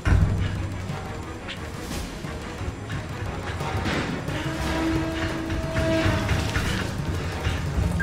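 Tense dramatic TV underscore: a deep low drone that comes in with a heavy hit, with scattered metallic clicks and knocks over it. A held mid-pitched tone sounds through the middle.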